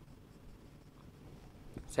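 Faint sound of a marker writing a word on a whiteboard.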